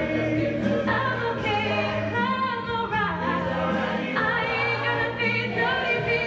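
Mixed-voice high school choir singing in harmony, with held low notes under moving upper voices.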